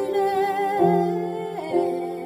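A woman singing a slow song, holding long notes that change pitch about once a second, the last ones fading softly.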